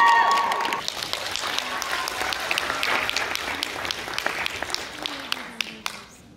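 Audience applauding and clapping after dance music stops about a second in. The clapping thins out and fades toward the end, with a few voices.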